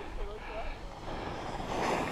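Wind rumbling over the microphone of a GoPro worn while skiing, with the skis hissing over packed snow; the sliding noise swells briefly near the end.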